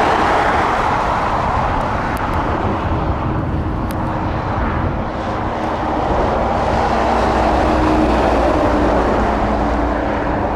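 Jet engines of an Airbus A330 airliner, a loud steady rushing noise with a faint low hum underneath.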